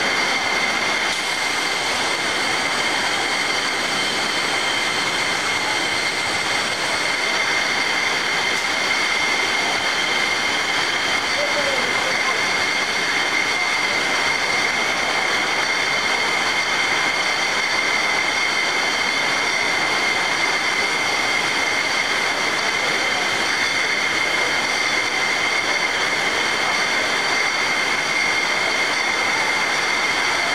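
A high-speed beer-bottle case packer running on a packing line: a steady mechanical din with a constant high whine and several fainter high tones above it.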